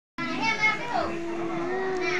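A baby's happy, high-pitched vocalizing: a short squeal, then one long drawn-out note that rises slightly.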